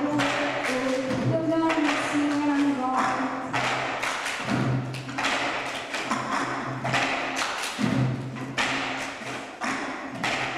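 Cup-song performance: several plastic cups are rhythmically clapped, tapped and knocked down on tabletops by a group of girls in time, while a girl sings the melody over the beat.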